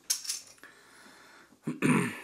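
A tasting glass clinking as it is picked up off the bar, a faint steady fizz, then near the end a louder gurgle as homebrewed porter starts to pour from the bottle into the tilted glass.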